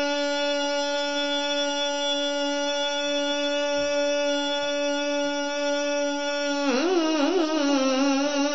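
A man's voice holding one long, steady sung note, then, near the end, breaking into a wavering, ornamented melody: the opening of a sung majlis recitation.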